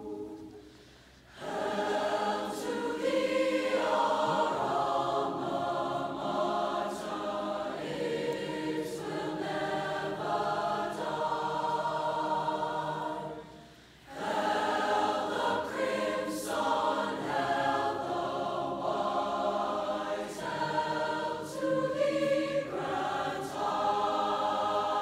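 Large combined mixed-voice high school choir singing the alma mater in sustained chords. The singing dips briefly right at the start and again about halfway through, between phrases, then resumes.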